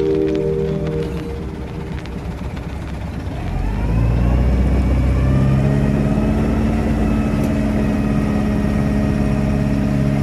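A fishing boat's engine picking up speed a little over three seconds in, its pitch rising, then running steadily under way. Background music fades out in the first second or two.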